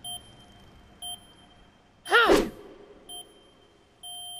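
Electronic countdown timer beeping with short high beeps roughly once a second. About two seconds in, a brief loud cry rises and falls in pitch.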